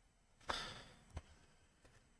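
A person sighing: one short, breathy exhale about half a second in, followed by a faint click.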